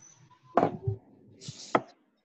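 A handful of irregular knocks and clicks, about four in two seconds, one of them with a short hiss.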